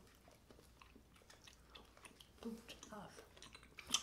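Faint chewing and small wet mouth clicks of people eating soft, partly melted chocolate bars, with a brief low voiced murmur a little past halfway.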